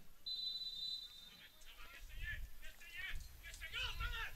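Referee's whistle blown once, a short steady high blast, the signal for the set piece to be taken. Faint shouts from players on the pitch follow in the second half.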